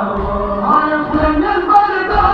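Voices chanting a Shia mourning lament (nauha) for Imam Hussain, with a low thump about once a second in time with the chant, the beat of matam chest-beating.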